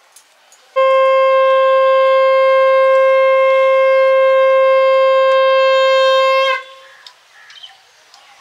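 Conch shell (shankha) blown in one long, steady blast of about six seconds, starting about a second in and bending slightly upward as it cuts off.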